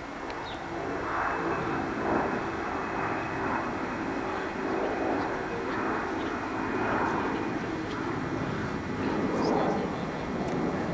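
A steady engine drone with a low hum, building just after the start, with a rushing noise that swells and fades every second or two.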